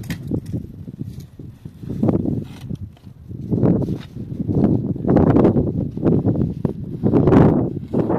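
Wind buffeting the microphone in gusts, each rush swelling and fading within about a second, the loudest near the end.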